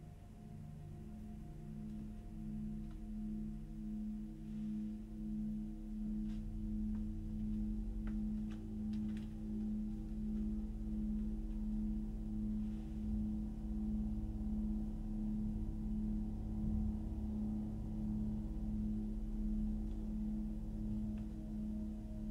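A sustained, ominous low drone from a film soundtrack: one steady tone pulsing slowly and evenly, with several fainter steady tones stacked above it and a low rumble under it. A few faint clicks come in about six to nine seconds in.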